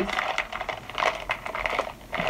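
Plastic bag of plastic beads handled: the packaging crinkles and the beads rattle inside it in a run of irregular small rustles and clicks.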